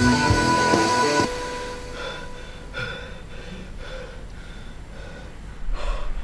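Loud rock music cuts off abruptly about a second in. Faint, quick panting breaths follow, roughly two a second, and a short burst of noise comes near the end.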